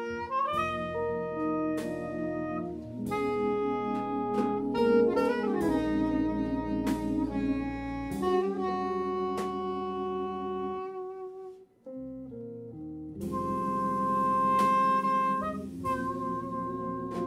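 Live small-group jazz: a soprano saxophone plays held, singing melody notes over electric guitar and a drum kit with cymbal strikes. The band stops briefly, almost to silence, a little under three-quarters of the way through, then comes back in.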